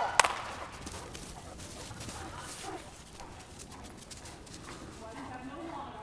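A sharp clap just after the start, then the patter and scuffle of Great Danes' paws on the loose dirt arena floor as they run, with quiet voices in the background.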